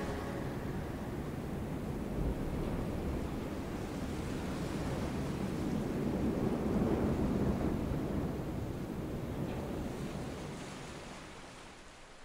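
Ocean waves washing: a steady, noisy wash that swells around the middle and then fades out near the end.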